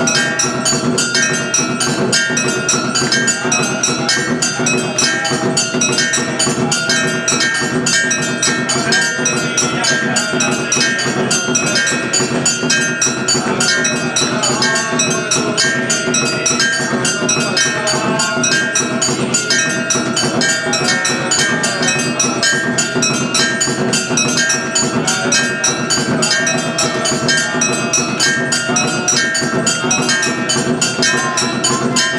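Temple bells ringing rapidly and without pause, with percussion beating a fast, even rhythm under them: the ringing that accompanies aarti, the lamp offering before a deity.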